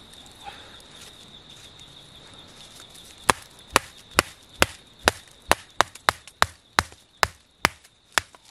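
Machete chopping at a wooden stick. About three seconds in, a run of about a dozen sharp, evenly spaced strikes begins, a little over two a second.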